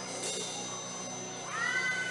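Soft sustained background keyboard music under a pause in the preaching. About one and a half seconds in, a high tone slides up and then holds for about a second.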